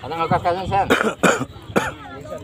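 A person nearby coughs three times in short, harsh bursts starting about a second in, just after a brief burst of voice.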